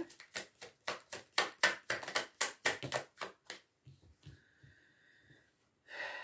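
A deck of cards shuffled by hand: a quick run of short card slaps and riffles, about four or five a second, stopping at about three and a half seconds in. After that a faint steady high tone is left.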